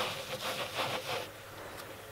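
Terry-cloth towel rubbed back and forth over the plastic drills of a diamond painting, wiping excess Mod Podge sealer off their tops: quick scrubbing strokes, about four a second, that fade out about halfway through.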